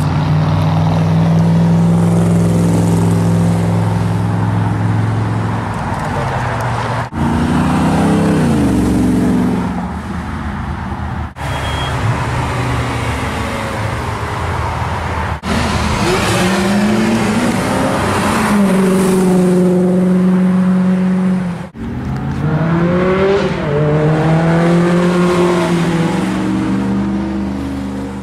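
Car engines heard one after another as they drive past on a street, joined by hard cuts. First a Shelby Daytona Coupe's V8 runs steadily for several seconds; later engines, a Ferrari 360 Spider's among them, rise in pitch several times as they accelerate, with tyre and traffic noise.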